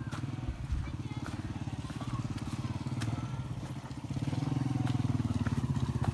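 Small motorcycle engine running with a rapid, even put-put, growing louder about four seconds in.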